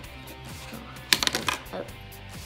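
Hard plastic LEGO pieces clattering: a quick cluster of sharp clicks about a second in, as the minifigure and its parts are knocked about on the build.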